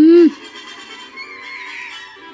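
A loud, short call that rises and then falls in pitch, cutting off just after the start, followed by quieter background music with held notes.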